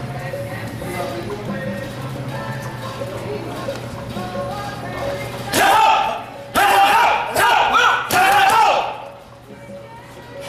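Music playing over a steady hum, with gloves thudding dully on focus mitts and body pads. From about five and a half seconds in to nine seconds in, a loud, high-pitched voice cuts in with drawn-out vocal sounds in several phrases.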